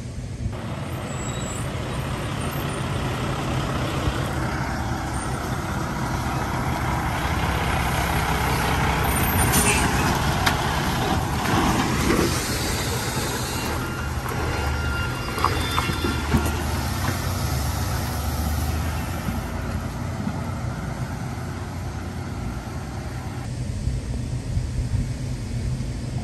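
Semi truck pulling a stainless-steel tanker trailer passes close by, its engine and tyres growing louder to a peak about ten seconds in. A short hiss of air brakes comes near the middle, followed by a low engine drone that fades as the truck moves off.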